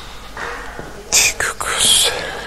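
A person whispering, with sharp hissing 's' and 'sh' sounds about a second in and again near the end.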